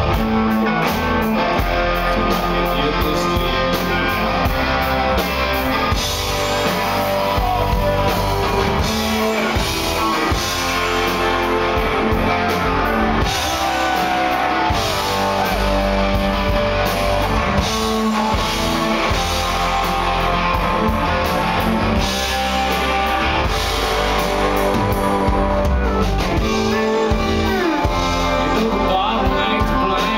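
Alternative-country rock band playing live: electric guitars and drum kit with a male lead vocal. It is heard from within the audience in a club.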